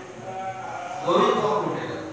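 A man's voice at the microphone, swelling about a second in into a loud, wavering drawn-out note.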